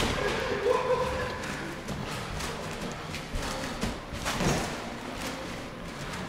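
Trampoline bed giving soft, irregular thuds as someone bounces on it.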